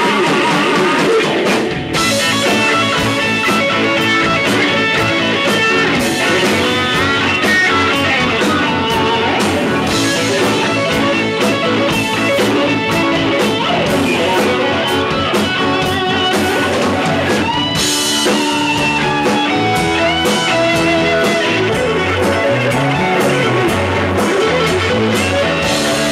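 Live rock band playing an instrumental passage: electric guitar lead lines with bends over bass guitar, drum kit and keyboard.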